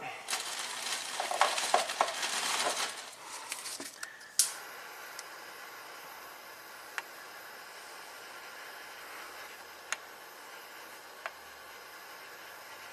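Electrical tape being pulled off the roll and wound around a wiring harness: a crackling, rustling sound for about four seconds, then a sharp snap, then only a few faint ticks.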